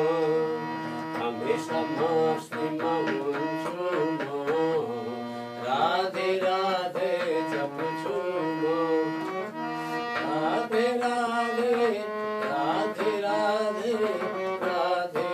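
Harmonium playing a devotional bhajan, its reeds sustaining steady chords and melody lines, with a voice singing a wavering melody over it.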